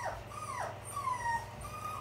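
A puppy whining: three or four short, high-pitched whines, most falling in pitch.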